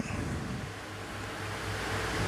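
Steady background hiss with a faint low hum: room tone.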